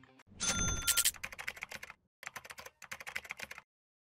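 Edited-in transition sound effect: a thump with a bell-like ding, then rapid keyboard typing clicks in three quick runs that cut off suddenly.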